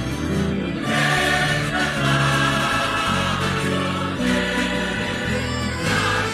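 Choir singing a hymn with instrumental accompaniment, long held notes changing about once a second.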